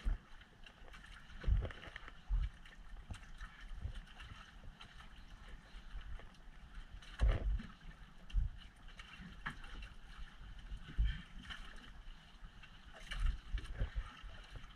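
Wind and water noise aboard a small boat at sea, broken by about half a dozen irregular low thumps.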